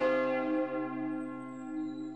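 A bell struck once, its ringing tones held and slowly fading away.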